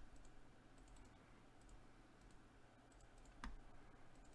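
Near silence with a few faint computer mouse clicks, one a little louder about three and a half seconds in.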